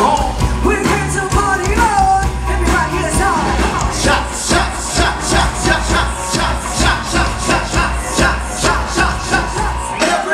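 Live rock band playing through a stage PA: electric guitar, bass and drums, with a vocalist singing over the first few seconds. From about four seconds in the drums keep a steady, even beat of about two hits a second.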